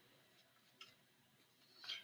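Near silence: room tone, with a faint tick about a second in and a soft short sound near the end.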